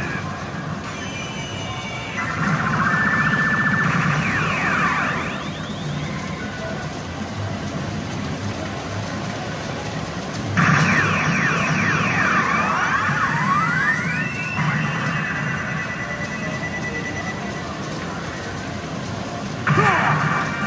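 Pachinko machine's electronic jackpot effects and music: siren-like rising and falling sweeps in two louder stretches, about two seconds in and again about ten seconds in, over steady machine music.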